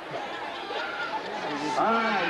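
Indistinct chatter of spectators, several voices talking at once, clearer and louder near the end.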